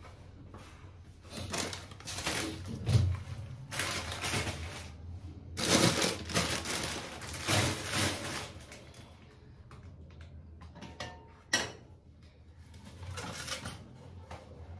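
Kitchen handling noises: a run of irregular rustling and scraping sounds over several seconds, then quieter, with a single sharp knock later on.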